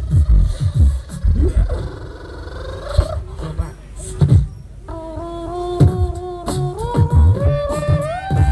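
Live group beatboxing into microphones: deep kick drums and sharp snare-like clicks keep the beat. Partway through, a held vocal melody note comes in over the beat and steps upward in pitch near the end.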